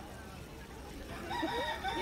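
A rooster crowing, starting about a second and a half in: one long call held on a steady pitch.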